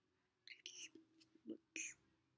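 About half a second of near silence, then a woman whispering a few soft, breathy words.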